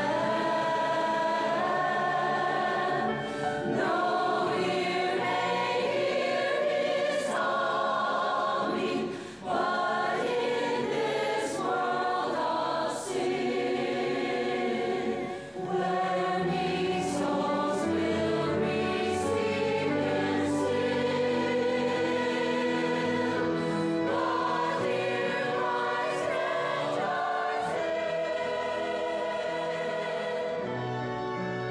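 Large mixed adult choir singing in harmony, the sound breaking briefly between phrases about nine and fifteen seconds in.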